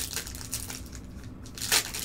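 Foil trading-card pack wrappers crinkling and crackling as they are handled, in short irregular bursts, the loudest near the end.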